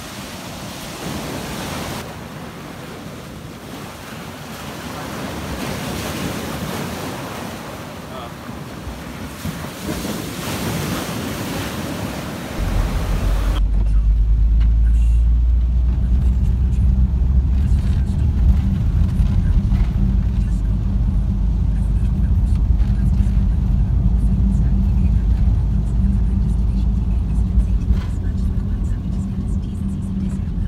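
Waves breaking on a beach in a steady rush of surf. About twelve seconds in it changes suddenly to the loud, steady low rumble of a VW T5 campervan on the road, heard from inside the cabin.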